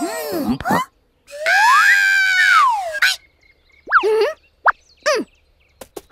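Cartoon sound effects and wordless character vocalizations. Boing-like pitch sweeps near the start; a longer pitched call about a second in that rises, holds and falls; short squeaky swoops near the end.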